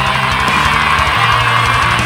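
Death metal played on a distorted seven-string electric guitar over bass and drums, with one long high note held throughout.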